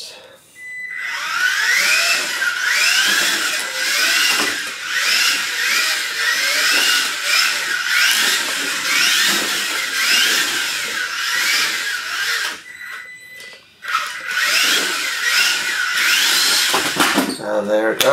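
Mini-Z radio-controlled car's small electric motor and gears whining. The pitch climbs again and again, about once a second, as the throttle is worked through the corners. The whine cuts out for about a second two-thirds of the way through, then picks up again.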